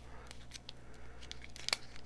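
Paper stickers being peeled off a roll: faint crackling of the paper and backing, with small scattered clicks and one sharper click near the end.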